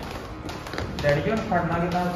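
Footsteps of several people walking down stairs and across a hard floor, a few sharp taps in the first second, followed from about a second in by a man's voice.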